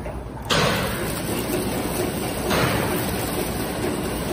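Automatic biscuit packing machine running among factory machinery: a steady mechanical noise with a hissing surge that starts suddenly about every two seconds and fades.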